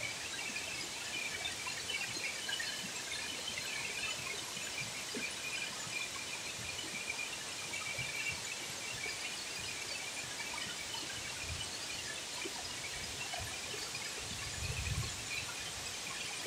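Steady rushing hiss of a waterfall plunging into its pool, with faint high bird chirps scattered through it. There is a brief low rumble near the end.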